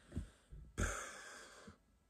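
A man's breathy exhale, a sigh lasting about a second that trails off, after a couple of brief soft sounds.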